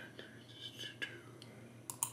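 Two computer mouse clicks, about a second in and near the end, in a quiet room, with faint breathy mouth noise in the first second.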